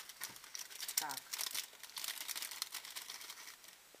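Clear plastic bag crinkling in rapid crackles as it is handled and opened, dying away shortly before the end.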